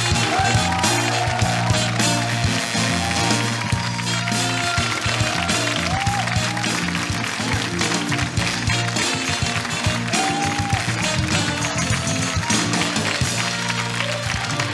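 Upbeat entrance music with a steady bass line and a melody above it.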